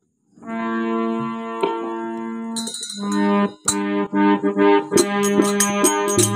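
Harmonium playing long held chords, starting about half a second in, with a short break a little past the middle. Quick rhythmic percussion strokes join near the end.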